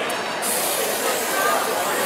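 A steady hiss starts about half a second in, with faint voices underneath.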